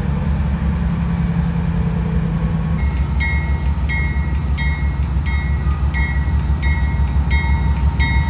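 Diesel locomotives of a freight train rumbling as the train starts to pull away. About three seconds in, the locomotive bell starts ringing at about one and a half strikes a second.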